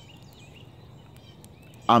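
Faint outdoor ambience with a few soft bird chirps and scattered light ticks, then a man starts speaking near the end.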